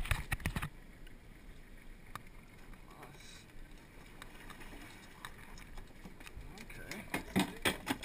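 Knocks and thumps of gear and bodies against a small open fishing boat: a cluster right at the start, then a faint hiss of wind and water, then a quickening run of knocks near the end.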